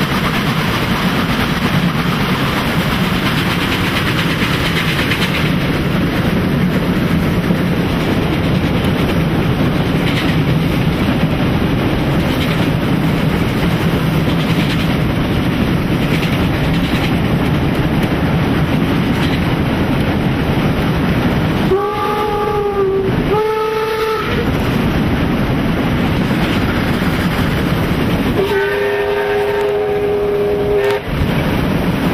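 Steam locomotive 50 3673, a German class 50 2-10-0, running with its train: a loud, steady rumble of wheels and running gear on the rails. Its steam whistle gives two short blasts about two-thirds of the way in, then a longer blast near the end.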